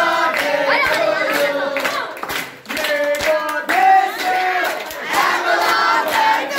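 A group of teenagers singing and chanting together loudly while clapping along to a steady beat, with a brief lull about halfway.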